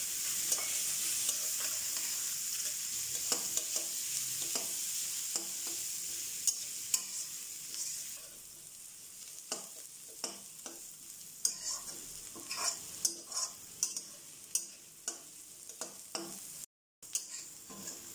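Sliced onions and curry leaves sizzling in oil in a wide metal wok, with a metal spatula scraping and tapping against the pan as they are stirred. The sizzle is strongest in the first half and then dies down, leaving the spatula's irregular scrapes and taps more prominent.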